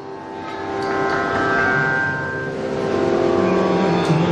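A steady drone of held pitched tones accompanying Kathakali padam singing, with a male singer's low held note coming in about three seconds in.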